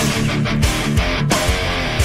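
Distorted electric guitar playing a fast, downpicked heavy metal riff over a full-band backing track.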